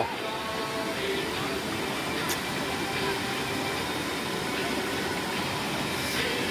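Steady rush of a mountain stream tumbling over boulders in a small cascade, with faint voices in the background.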